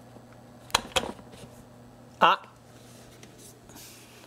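Two sharp clicks close together about a second in, then a short wordless vocal exclamation around two seconds in, the loudest sound. A faint steady low hum runs underneath.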